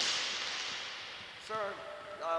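A sudden sharp crack like a whip, followed by a hiss that fades away over about a second and a half, then a man's voice crying out with a falling pitch.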